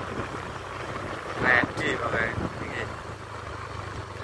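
A steady low engine hum, as of a vehicle idling close by, with a voice calling out about a second and a half in.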